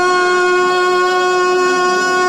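A girl's voice holding one long, steady sung note into a microphone, part of a devotional salaam tarana.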